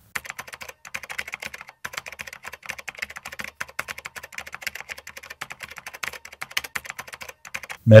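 Typing sound effect: a quick, uneven run of computer-keyboard key clicks for about seven and a half seconds. It stops just before a man's voice begins.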